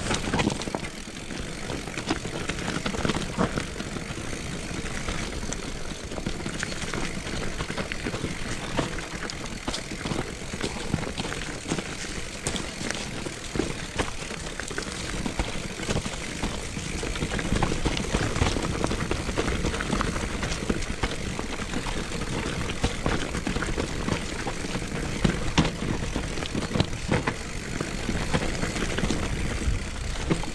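Mountain bike descending a rough dirt singletrack: a continuous rumble of tyres and wind on the camera's microphone, with frequent clicks and knocks as the bike rattles over stones and roots.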